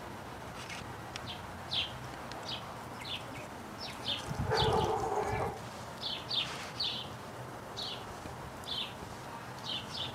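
Small birds chirping outdoors, with many short, high chirps at irregular intervals. A brief lower-pitched hum comes about halfway through and is the loudest thing heard.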